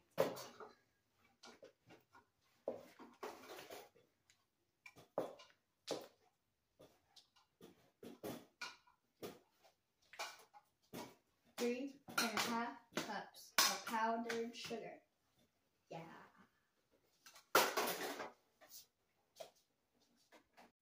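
A spoon knocking and scraping against a mixing bowl as powdered sugar is scooped in and stirred into butter by hand, in short irregular clicks and clunks, with a longer scrape or rustle near the end. Quiet, unclear voices come in around the middle.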